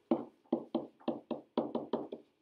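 Pen tapping against an interactive whiteboard's surface while writing, about eight sharp taps in quick succession.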